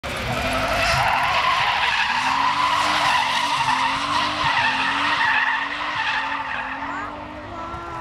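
Drift car sliding sideways through a corner, its engine revving hard with the pitch rising and falling as the throttle is worked, and its rear tyres screeching. The sound fades after about six seconds as the car drives away.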